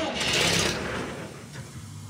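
Starter cranking the engine of an Ingersoll Rand towable air compressor as its start button is pressed: a burst of whirring that winds down within about two seconds without the engine catching, the choke cable being broken.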